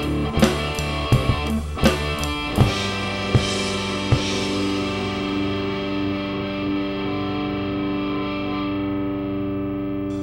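Ending of a hard rock song: a run of drum hits over a distorted electric guitar chord during the first four seconds or so, then the final chord is held and rings out, slowly fading.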